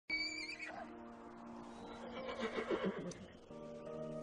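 A horse nickering over soft sustained music chords, with a low pulsing nicker about two and a half seconds in.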